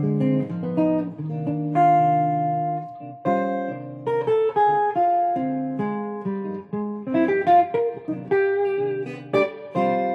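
Clean-toned semi-hollow electric guitar playing a jazz line over a minor ii–V–i (D minor 7 flat 5, G7, C minor). It opens with held low notes and moves to quicker picked single-note runs in the second half.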